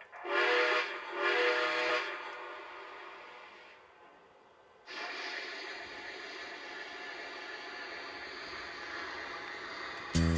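Model steam locomotive's onboard sound system blowing two steam-whistle blasts with several notes at once, the second slightly longer. A steady hiss starts about five seconds in as the locomotive begins to roll.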